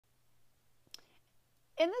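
A single sharp computer mouse click about a second in, over a faint steady electrical hum.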